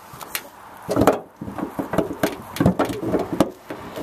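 Knocks and clicks of a 2010 Toyota Sienna's hood and its catch being handled as the hood is brought down: a rapid series of sharp knocks starting about a second in, the loudest first.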